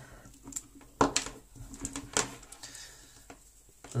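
Rustling and light clicks of a MacBook charger's plastic-sheathed cable and its wire twist ties being unwound and handled, with a few sharper clicks about one and two seconds in.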